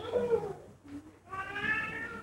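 A person's voice: a short low sound at the start, then a high-pitched, drawn-out vocal exclamation in the second half.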